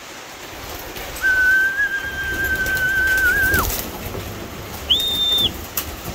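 A person whistling a call to bring pigeons in to feed: one long steady note of about two and a half seconds that drops away at its end, then a short higher note.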